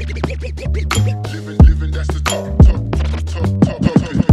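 Soulful hip hop instrumental beat: a steady deep bassline under heavy kick and snare hits, with a quick run of swooping, pitch-bent sounds near the end.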